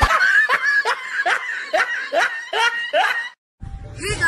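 A person laughing in a rapid run of about ten short 'ha' syllables, each falling in pitch, about three a second, cutting off abruptly near the end.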